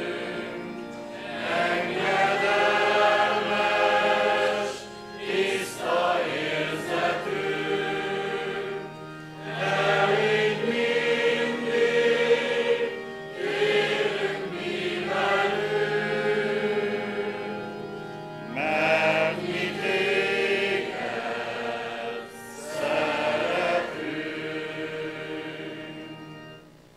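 Congregation singing a hymn of praise together, in long phrases with short breaks between them.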